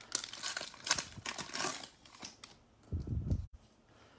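Plastic wrapper of a baseball card pack being torn open and crinkled, in quick irregular crackles for the first two and a half seconds, then a low thump about three seconds in.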